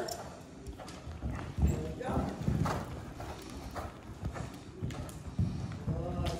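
Hoofbeats of a horse cantering on soft dirt arena footing, coming as irregular low thuds, the loudest about a second and a half in.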